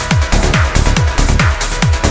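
Uplifting trance music from a DJ mix: a steady four-on-the-floor kick drum at about two beats a second, each kick dropping in pitch, with hi-hats between the kicks and sustained synth pads.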